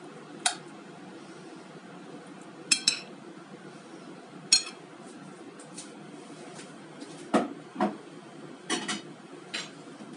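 A utensil clinking and knocking on a ceramic plate as cooked pasta shells are served onto it: a handful of separate sharp clinks, the later ones duller knocks.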